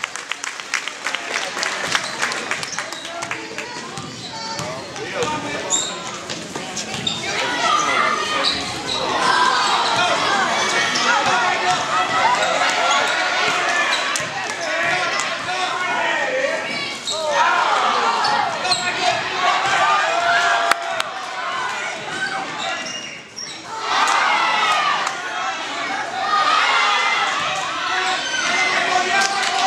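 A basketball bouncing on a gym's hardwood floor during live play, with players' footfalls, and many spectators' voices talking and shouting that echo in a large hall. The voices grow louder from about eight seconds in.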